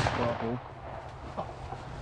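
A shotgun blast dying away at the very start, then a single faint click a little past halfway.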